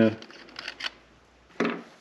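A few short light clicks as the antenna is twisted off a Kenwood TH-D75A handheld radio, plastic and metal parts knocking under the fingers.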